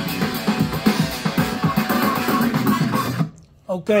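Guitar-and-drums music playing through a Kenwood SJ7 mini hi-fi system's speakers, stopping suddenly about three seconds in.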